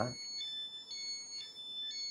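A run of high-pitched electronic tones, several at once, stepping from pitch to pitch every few tenths of a second.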